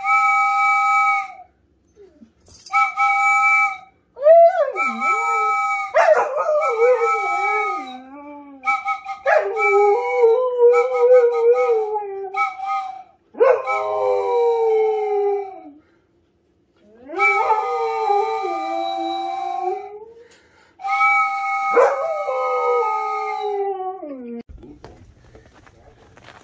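Repeated blasts on a small hand-held wooden whistle, each a steady chord of a few pitches held a second or two. A dog howls along with it, its howls gliding up and down over and between the blasts.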